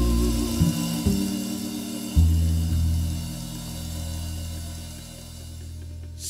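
Jazzabilly band music: guitar, bass and drums, with held notes and a few drum strokes early on, then a deep bass note about two seconds in that rings and slowly fades away.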